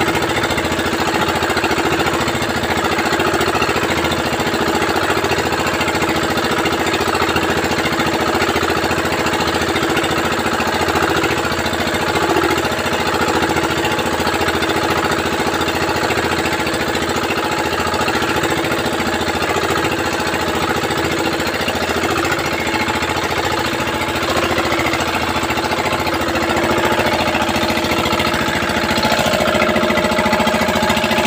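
A small boat engine running steadily with a fast, even beat.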